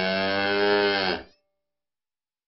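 A cow mooing: one long call that dips in pitch at its end and stops about a second and a quarter in.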